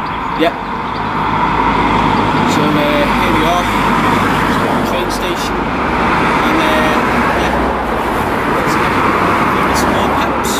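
Road traffic passing close by: cars driving along the street, a steady rush of tyre and engine noise that grows louder about a second in and stays up.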